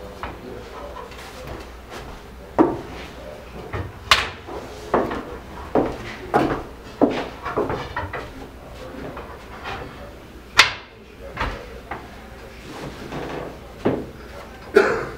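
Wooden slats and braces of a folding field bed knocking and clattering against the wooden frame as they are set in place: about a dozen sharp knocks at uneven intervals, the loudest near the start, about four seconds in and about ten and a half seconds in.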